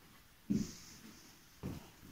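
Two footsteps on the corridor's bare floor, which has not yet been covered with linoleum, a little over a second apart.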